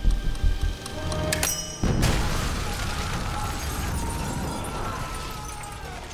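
A nail bomb goes off about two seconds in: a sudden heavy boom whose rumble slowly dies away, under tense film music.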